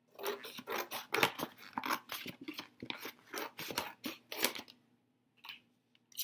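Scissors cutting through a folded paper plate: a quick run of snips for about four and a half seconds, then a pause and one more snip near the end.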